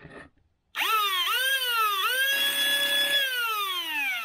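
Lepus Mk2 foam-dart blaster's flywheel motors spinning up with a rising whine about a second in. The pitch dips and climbs again twice, holds steady with a rougher motor noise underneath, then winds down near the end. It is a test run after rewiring the motors through a single MOSFET on a small 2S LiPo, and it works.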